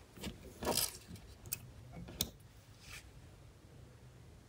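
Soft handling noises: a few brief rustles and light clicks as hands touch a smartphone in a silicone case on a tabletop and then draw away.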